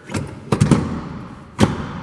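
The third-row seat of a 2013 Mitsubishi Outlander being folded down flat into the cargo floor: several knocks and clicks from the seat mechanism. The sharpest thud comes about one and a half seconds in, as the seat settles into place.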